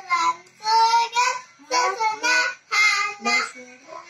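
A young girl singing solo, in short held phrases with brief pauses between them.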